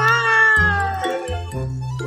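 A long cat meow, falling slowly in pitch and ending about a second in, over background music with a repeating bass beat.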